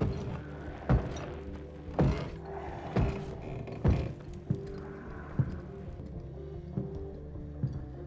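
Low, sustained suspense music with heavy thuds landing about once a second, strongest in the first half and fainter and sparser later.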